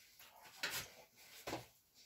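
Faint, brief handling noises: a few soft clicks about half a second in and again about a second and a half in, over quiet room tone.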